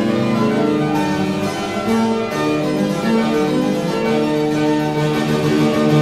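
Harpsichord and fortepiano playing a classical-era duo, moving through chords and ending on a long held final chord near the end.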